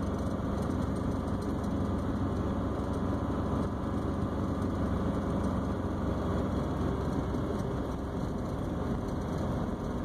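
A car's engine and tyres running steadily, heard from inside the cabin while driving on a snow-covered road; the noise is low and even, with no breaks.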